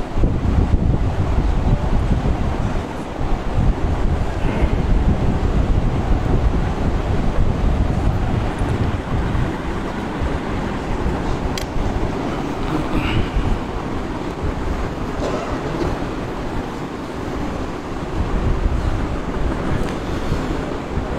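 Steady, fairly loud low rumbling noise with no speech, like wind buffeting the recording microphone.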